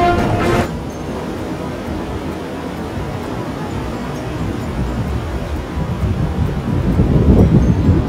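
Background music that cuts off just under a second in, then surf washing over a rock shelf with wind buffeting the microphone, a low, rough rumble that grows louder near the end.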